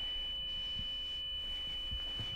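A steady, high-pitched ringing tone, a film sound effect, held at one pitch over a faint low rumble.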